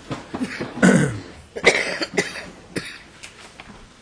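A person coughing and clearing their throat, with the two loudest coughs about a second in and just under two seconds in, and a few smaller sharp sounds between.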